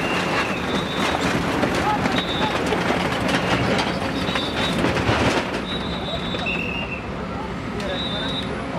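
Tracked excavator demolishing brick buildings: a steady engine rumble with the clatter and knocking of rubble and sheet metal, and short high-pitched tones about every second or two.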